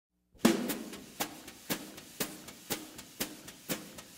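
Jazz drum kit playing alone at the opening of a hard bop track. After a first hit, sharp snare or rim strokes keep an even pulse of about two a second, each with a short pitched ring.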